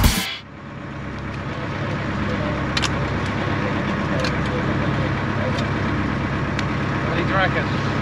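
A boat's engine running steadily under way, with a few sharp clicks from scallop shells being handled on deck. Faint voices come in near the end.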